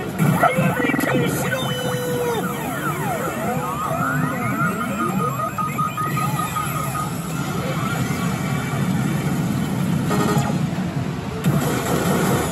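A pachislot machine playing its electronic game music and sound effects, a dense jumble of gliding electronic tones and jingles that lasts the whole time, mixed with the clamour of other machines.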